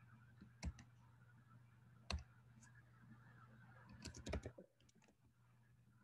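Computer keyboard typing in sparse keystrokes: a single click about half a second in, another about two seconds in, then a quick run of several keys around four seconds in. A faint steady low hum lies underneath.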